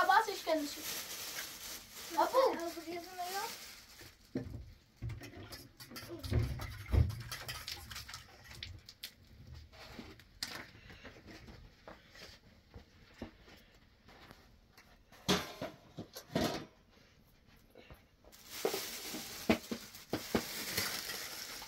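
A small child's voice briefly, about two seconds in, then quiet handling sounds: a low rumble, scattered light clicks and taps, and near the end the rustle of a plastic bag being picked up.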